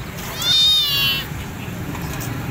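A hungry stray kitten gives one high-pitched meow, a little under a second long, that rises and then falls away at the end.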